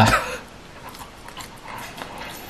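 A man's voice finishing a word at the start, then low room sound with a few faint small clicks and a soft breath near the end.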